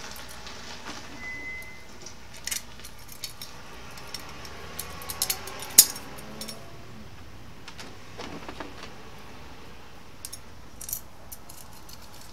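Scattered small metal clicks and clinks as bolts, washers and nuts are handled and fitted by hand onto a metal TV mount bracket, with one sharp click about six seconds in the loudest.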